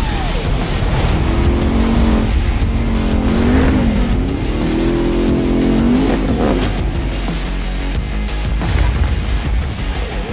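Ram 1500 TRX pickup's supercharged V8 running hard at high revs, its pitch dipping and climbing back twice, mixed with music.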